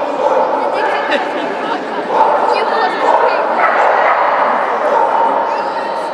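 Irish terrier barking and yipping repeatedly over a steady background of hall chatter.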